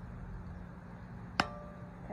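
Quiet room tone with a steady low hum, broken by a single sharp click with a brief ring about one and a half seconds in.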